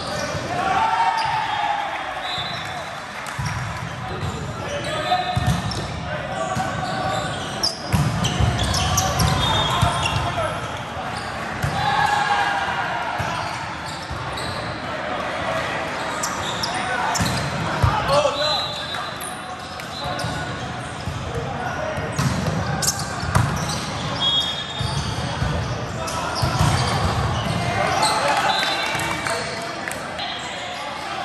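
Indoor volleyball in a large, echoing gym: players' voices calling and shouting across several courts, with sharp smacks of volleyballs being struck and bouncing on the hard court floor, a few of them standing out above the rest.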